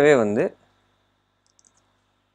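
A man's spoken word at the start, then near silence broken by a few faint computer mouse clicks near the end.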